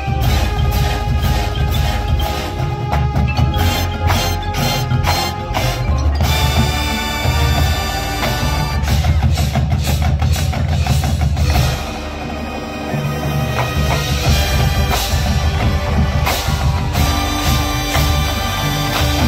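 A full university marching band playing live: brass and woodwinds with a drumline and a front ensemble of mallet percussion. Rapid drum strokes punctuate the first six seconds, then held ensemble chords follow, with a brief softer passage about twelve seconds in.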